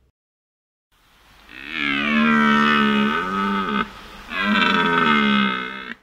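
A deer stag roaring twice: a long, low call of about three seconds, then a shorter one just after the four-second mark.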